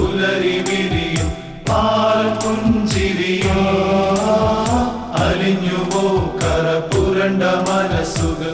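Christmas song: a choir of men's voices singing over an orchestrated keyboard backing, with a steady, regular drum beat.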